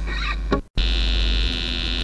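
Steady electrical buzz and mains hum between songs on a raw demo recording, with no music playing. A short fading tail and a click come first, then the sound drops out completely for an instant before the buzz sets in.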